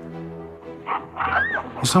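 A baboon's cry, one call that rises and falls about a second in, over steady background music.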